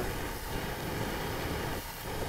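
Steady rushing noise with a low rumble, from a hand-held propane torch burning.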